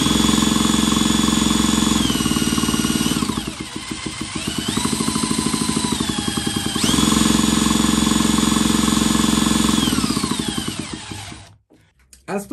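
Cordless drill on high speed spinning a two-stroke chainsaw engine over through its clutch: a high motor whine over a low rhythmic pulsing. The drill slows after about three seconds, picks up again, runs back to full speed about seven seconds in, then winds down and stops near the end.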